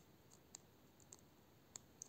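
Near silence with faint, short clicks about every half second, four in all.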